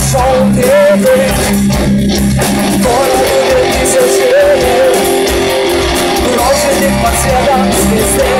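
A live rock band playing loudly: a woman sings a melody over electric guitars, bass and drums.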